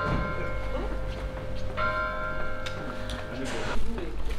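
Church bell tolling twice, about two seconds apart, each stroke ringing on for nearly two seconds.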